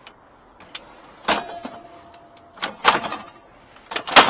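An aluminium ladder being slid and knocked onto a vehicle's metal roof rack: three short scraping clatters, the first followed by a faint ringing tone for about a second.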